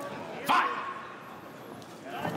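Referee shouting "Fight!" once, about half a second in, to urge the fighters into action; the call is sharp at the start and drawn out for about a second.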